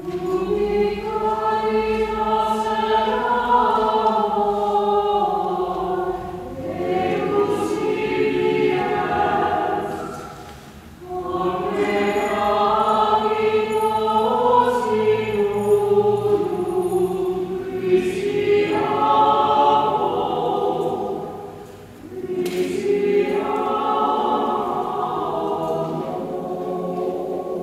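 A choir singing a hymn in long sung phrases, with brief breaths between phrases about ten seconds in and again about twenty-one seconds in.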